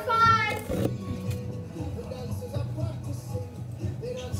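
A girl's loud, high-pitched voiced cry in the first second, then quieter background music.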